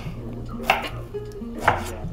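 Chef's knife cutting through fresh pineapple onto a wooden chopping board: two knife strikes about a second apart, over soft background music.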